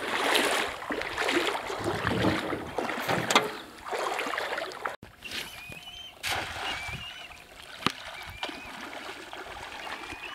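Water sloshing and splashing as someone wades through ankle-deep water over sand, irregular and fairly loud. It cuts off about halfway through, giving way to a quieter shoreline ambience with short high chirps about once a second.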